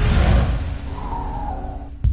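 Logo-ident sound effect: an electronic whoosh over a deep rumble that trails off, with a faint held tone in the middle, as the electronic music before it ends.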